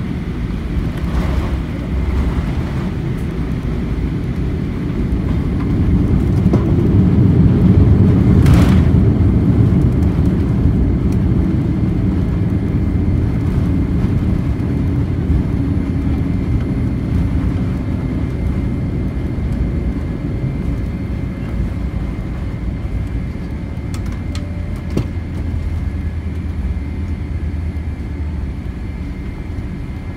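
Deep rumble heard from inside the cabin of a Boeing 787-8 jet rolling along the runway. It swells to its loudest about eight seconds in, then gradually eases as the aircraft slows, with a brief sharp knock just after the peak.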